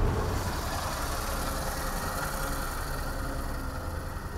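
Truck engine running steadily, heard from inside the cab while driving: a low drone with a faint steady whine above it.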